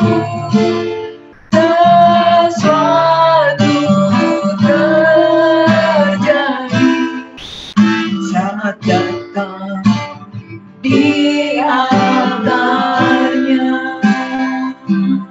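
A woman singing a worship song of praise in phrases, accompanied by an acoustic guitar being strummed and picked, with short breaks between phrases.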